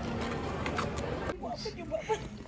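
Indistinct background voices over general crowd noise, dropping off suddenly a little past halfway to a quieter background with a few faint voice sounds.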